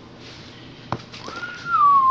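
A woman whistling one long, clear note that starts about a second and a half in and slides gently downward in pitch. It comes just after a single brief knock.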